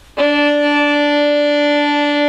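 Violin's D string bowed in one long down-bow: a single steady note that starts just after the beginning and is held evenly throughout.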